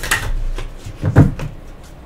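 Deck of tarot cards handled and shuffled in the hands over a desk, with a few short dull knocks, the loudest two close together just after a second in.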